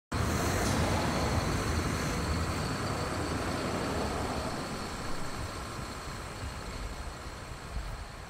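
A bus pulling away and driving off down a road, its engine and road noise loudest at first and fading steadily as it goes.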